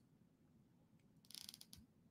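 Near silence, broken about a second and a half in by a short run of faint, quick clicks from a computer mouse.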